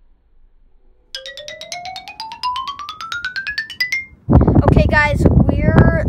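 A rapid run of short electronic beeps climbing steadily in pitch for about three seconds, like an editing transition sound effect. After a brief gap, loud wind buffets the microphone and a boy starts speaking.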